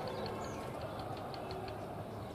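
A motor running steadily with a low rumble and a fast, light ticking of about five or six ticks a second.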